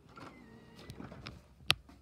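DVD player's disc drive whirring as it loads and spins up the disc, then one sharp click near the end.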